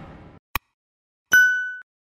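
A short electronic ding: a bright ringing tone with a few higher overtones, lasting about half a second and cutting off sharply. Before it, a fading swish dies away and a single sharp click sounds about half a second in.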